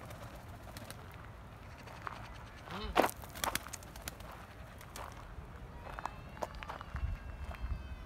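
A flock of domestic pigeons moving about on gravel, quiet overall. About three seconds in there is a short cluster of sharp sounds, fitting a few birds flapping their wings.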